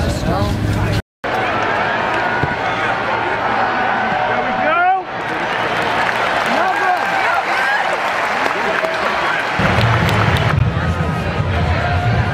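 Hubbub of a crowd, many people talking and calling out at once with no single clear voice, broken by a brief dropout about a second in.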